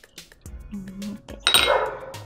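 Wooden spoon stirring thin batter in a glass mixing bowl, clicking and clinking against the glass several times, with a brief louder rustling burst about a second and a half in. Background music plays underneath.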